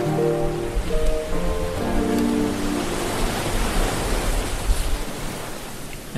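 Background music fading out about halfway through, leaving the steady wash of small waves breaking on a sandy beach.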